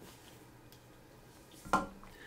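A faint click, then a single short, sharp knock or clatter of something hard near the end.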